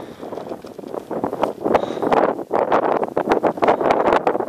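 Strong wind buffeting the microphone in uneven gusts, with rough crackling bursts.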